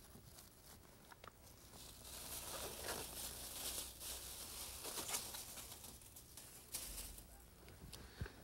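Faint crinkling and rustling of a thin plastic pre-taped drop cloth being handled and pressed down along a floor edge, starting about two seconds in and dying away near the end, with a brief flurry just before it stops.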